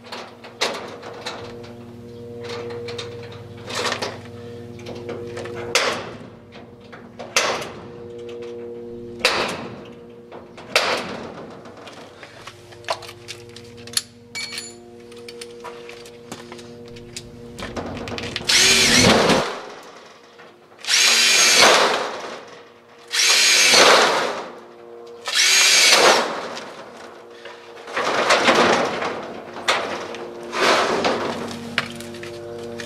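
Handheld power drill run in about six short bursts through the second half, each about a second long with a whine that rises as the motor speeds up, while a lock hasp is fitted to a steel shed door. Before the drill starts there are scattered light clicks and knocks of handling at the door.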